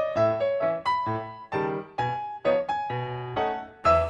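Background music: a gentle piano melody, single notes struck about twice a second and dying away, over lower bass notes.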